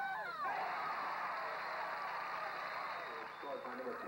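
Spectators cheering and shouting together for a goal. The cheer swells about half a second in and dies down after about three seconds into separate voices.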